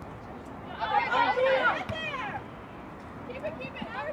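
Several voices shouting at once at a soccer game, starting about a second in and lasting about a second and a half, with fainter calls near the end.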